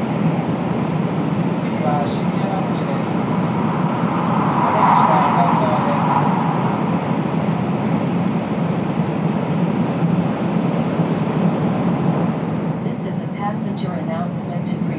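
Cabin running noise of an N700-series Shinkansen car at speed: a steady low rumble and rush of wheels and air, swelling a little about five seconds in.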